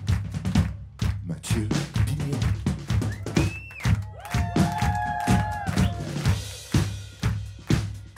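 Live drum kit groove of kick, snare and cymbal strokes over a steady bass line, with a few held melodic notes in the middle.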